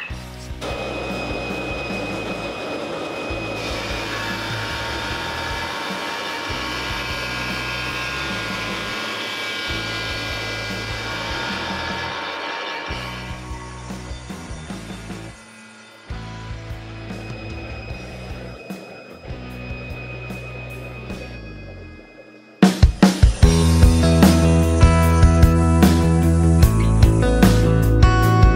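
Table saw running with the dust extractor on while an oak barrel stave is pushed over the blade on a crosscut sled, taking a shallow hollow out of its inside face: a steady machine noise, with background music under it. About 23 seconds in, the machine sound gives way to louder strummed guitar music.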